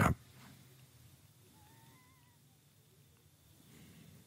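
Quiet room tone with one faint, wavering high-pitched animal call about one and a half seconds in, lasting under a second.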